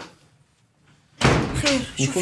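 A door bangs shut with a sudden heavy thud about a second in, after a near-quiet moment; a woman starts talking right after it.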